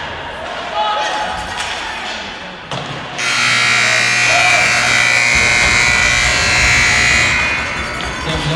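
Ice rink's electric buzzer sounding loudly for about four seconds, starting about three seconds in, over the murmur of the arena.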